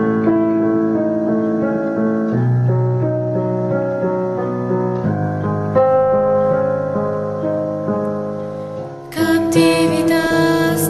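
Instrumental song intro on a keyboard, slow sustained chords changing every two to three seconds. Just before nine seconds in it fades, then a fuller, brighter accompaniment comes in.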